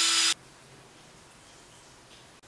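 Power drill turning a left-hand drill bit into a broken steel head stud in an LS engine block, with a steady motor whine. It stops suddenly about a third of a second in, leaving only faint room noise.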